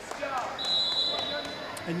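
Volleyball referee's whistle: one steady, high-pitched blast of about a second, starting about half a second in. It signals the next serve.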